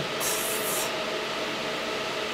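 Steady rushing noise of a six-card AMD Radeon GPU mining rig's cooling fans running at about 92–97% speed, with a few faint steady tones in it.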